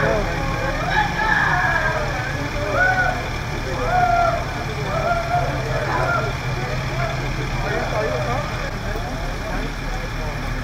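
Fire engine engines idling as a steady low hum throughout, under indistinct voices of people talking.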